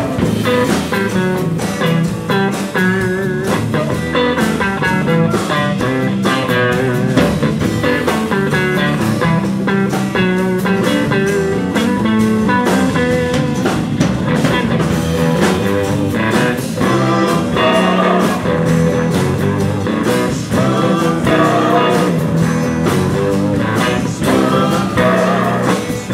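Live electric blues band playing: electric lead guitar with wavering, bent notes over acoustic rhythm guitar, bass guitar and drums.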